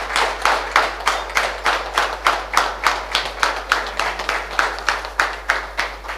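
A small group of people clapping their hands in a steady rhythm, about four claps a second.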